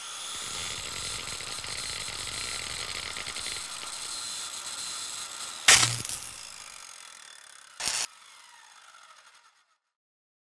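Sound effects for an animated logo reveal: a steady sparking hiss with fine crackle, a loud impact hit with a low thud near the middle, and a second shorter hit about two seconds later, then the sound fades out.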